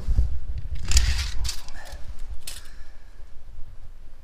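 A metal tape measure being pulled out and set against a car tire, with two short rattling scrapes about a second and two and a half seconds in, over a low handling rumble on the microphone.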